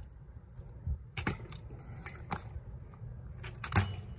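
BMX bike hopped on its rear wheel along a concrete curb: a string of sharp knocks and metallic rattles as the rear tyre lands and the bike's parts shake, with the loudest knock near the end.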